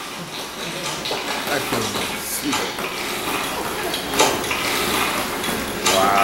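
Light clattering with a few sharp knocks, about two seconds in, about four seconds in and near the end, over faint murmuring voices.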